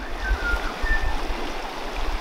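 River water running over rocks, a steady rushing, with two faint short high whistles in the first second.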